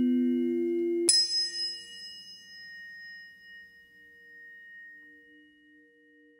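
Two held tones end with a single sharp strike of a bell-like metal instrument about a second in. It rings on with several clear tones and fades slowly over the next few seconds, its lower tones wobbling in a slow beat.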